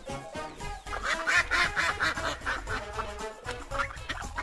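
Duck quacking, a quick run of quacks starting about a second in, over light background music.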